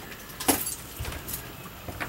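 A few short knocks and clicks from someone walking and handling things inside a travel trailer, the loudest about half a second in.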